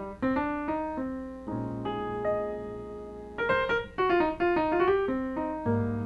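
Solo jazz piano on a Steinway grand: quick runs of single notes, a held chord in the middle, then another flurry of notes.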